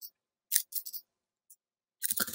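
A few sharp clicks from a computer keyboard and mouse: a quick run of clicks about half a second in, then a single faint click.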